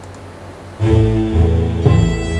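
Symphonic music with low bowed strings, a piece in progress played back from a music workstation, entering about a second in after a short quiet pause.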